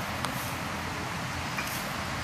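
Steady outdoor background noise with two faint ticks, one just after the start and one near the end.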